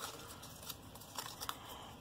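Faint handling of a small folded cardstock piece: light paper rustling with a few soft ticks and taps.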